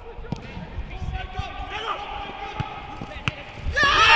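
Players' shouts and calls echoing around an empty football stadium, with a few sharp thuds of the ball being struck. A burst of loud shouting breaks out near the end.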